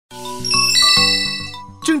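A short chime jingle: a few bell-like notes struck one after another in the first second, ringing on and fading away. A voice starts speaking just before the end.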